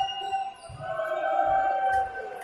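Basketball dribbled on a hardwood court, thumping about twice a second, with long high squeaks and calls from players' shoes and voices echoing in a large sports hall.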